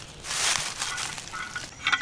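A short rustling, crunching scrape lasting about half a second, then a few faint clicks near the end, as hands work at a metal tap fitting set in dry leaf litter.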